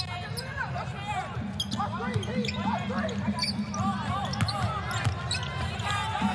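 Basketball game sounds on a hardwood court: the ball dribbling in sharp knocks and sneakers squeaking in many short chirps. Under them runs a steady arena hum.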